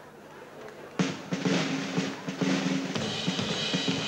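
A live band strikes up about a second in, with drum kit hits on bass drum and snare over low sustained instrument notes, setting off a steady beat.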